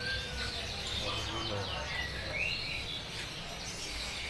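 Caged rosella parrots giving short, repeated chirping calls over a steady low background rumble.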